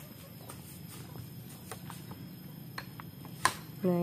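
Scattered light knocks of rough stones being set by hand into a house foundation, with one sharper knock about three and a half seconds in.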